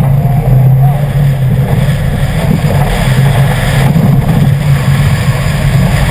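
2011 Subaru WRX's turbocharged flat-four engine running hard at a fairly steady pitch while the car drives a dirt rally course, with a haze of tyre, gravel and wind noise around it.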